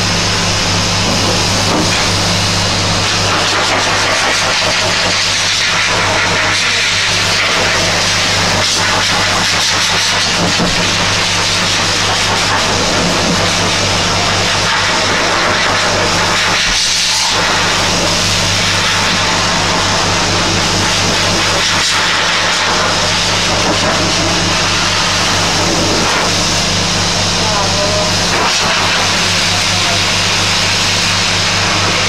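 High-velocity dog dryer (force blower) running steadily, blowing air through its corrugated hose onto a wet dog's coat: a continuous rush of air over a steady low motor hum.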